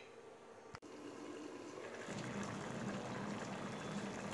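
Mutton curry simmering in a stainless steel pot: a faint, steady bubbling that gets a little louder about halfway through, after a single sharp click about a second in.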